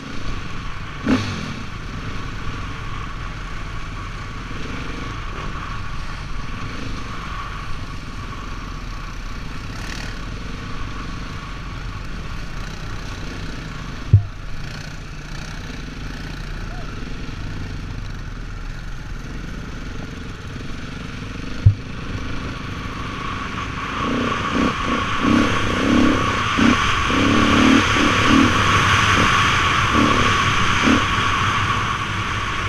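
ATV engine running steadily as it rides a rutted dirt trail, with a few sharp knocks from the machine jolting over bumps. About three-quarters of the way through, the engine gets louder and more uneven.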